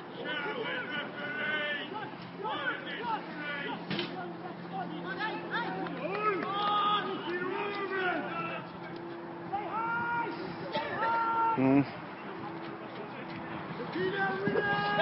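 Footballers and touchline spectators shouting and calling to one another during play, the voices at a distance and overlapping, with one louder shout about two thirds of the way through.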